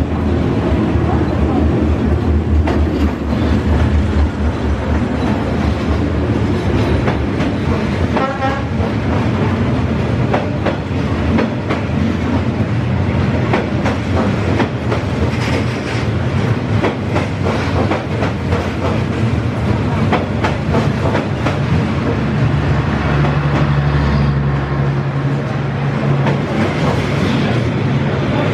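Diesel-hauled passenger train passing close by on the street track, with a steady rumble and repeated clickety-clack of the wheels over the rail joints.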